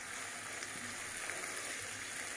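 Sliced onions and ginger-garlic paste sizzling steadily in hot oil in a pan as they fry.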